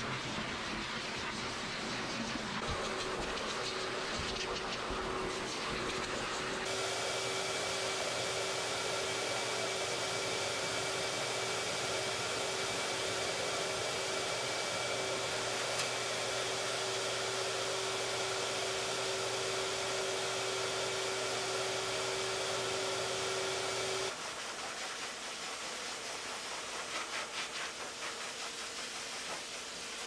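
High-velocity pet dryer blowing air through its hose and nozzle onto a thick double coat: a steady rushing hiss with a steady hum. The sound jumps louder about seven seconds in and drops quieter about six seconds from the end.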